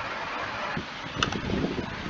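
Steady background noise with a single sharp click about a second and a quarter in.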